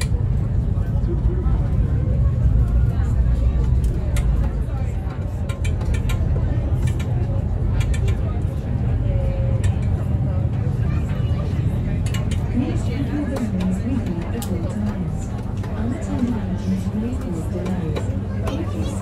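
Steady low drone of a river boat's engine heard from inside the passenger cabin, with indistinct talking that becomes clearer from about twelve seconds in, and a few scattered clicks.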